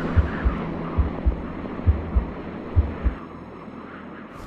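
Cinematic intro soundtrack: a low heartbeat-like double thump, four pairs at about one pair a second, over a hum that fades out near the end.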